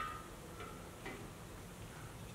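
A sharp click with a short metallic ring at the start, then two fainter clicks about half a second apart, from a Socorex ultra 1810 automatic veterinary syringe being worked and withdrawn after an injection.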